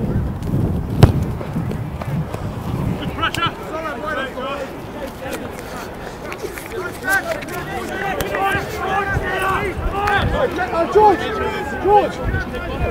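Shouts and calls from rugby players across the pitch, overlapping and growing busier towards the end, over wind rumble on the microphone, with one sharp thump about a second in.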